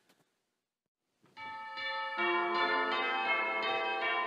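A sequence of bell tones begins about a second and a half in, struck one after another, each ringing on under the next.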